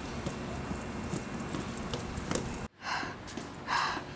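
A dense crackling, rustling noise that cuts off suddenly, then two loud breaths, a person panting after climbing stairs.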